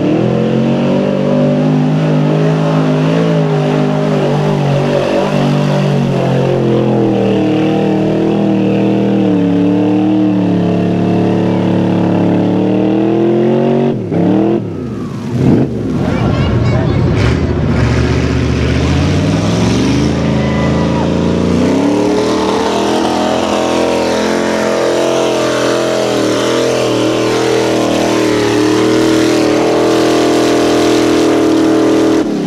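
Engines of modified 4x4 mud trucks revving hard as they plough through a mud pit, the pitch rising and falling as the throttle is worked. About halfway through the sound drops briefly and breaks, and another vehicle's engine then holds at high revs through the end.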